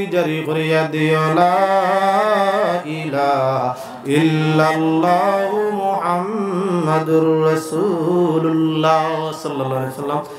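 A man chanting a supplication in a slow, melodic voice, holding long wavering notes. He sings two long phrases with a short break about three and a half seconds in, closing a dua.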